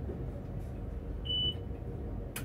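A single short, high electronic beep about a quarter of a second long, heard over the steady low hum of a stationary tram.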